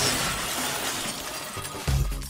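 Sound effect of a television screen shattering: a burst of breaking glass that fades away over music, followed by a deep bass hit near the end.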